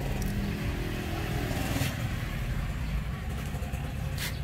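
Steady low rumble of a motor vehicle engine, with a faint engine drone that fades out about a second and a half in. A single short tick comes near the middle.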